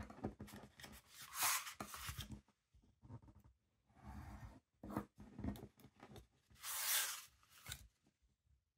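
Craft knife cutting through thin white paper on a cutting mat, trimming the excess paper at the corners of a covered album board, with paper handling between the cuts. The two longest, loudest cuts come about a second and a half in and near the end.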